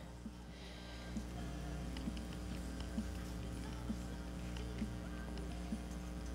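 A plastic cable luber being unscrewed by hand, with faint small clicks about once a second as it is turned and regripped, over a steady low hum.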